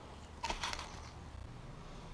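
A brief handling noise, a short scrape or rustle about half a second in, over otherwise quiet workshop room tone.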